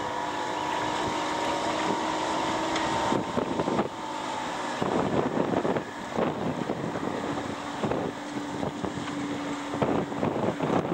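Wind buffeting the microphone over open water, rising and falling in gusts. Under it a steady motor hum sounds for the first three seconds and again over the last three.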